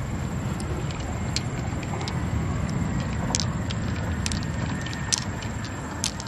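Loose pearls clicking against each other and the mussel shell as they are picked out one at a time and gathered in a hand: a few sharp, separate clicks over a steady low rumble.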